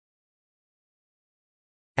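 Dead silence, with no sound at all, until a synthesized narrating voice starts right at the very end.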